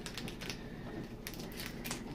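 Pokémon trading cards handled and flicked through by hand, the card stock giving a few light clicks and snaps, grouped a little after the start and again past the middle.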